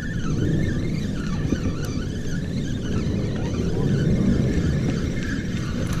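Penn spinning reel being cranked steadily to bring in a hooked trout, with a faint wavering whine above a steady low rush of wind on the microphone.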